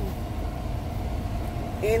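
Steady low rumble of a car, heard from inside the cabin, with a faint steady hum above it; a woman's voice comes back in near the end.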